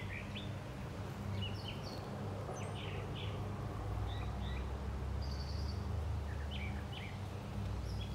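Small birds chirping in short, scattered calls over a steady low background rumble.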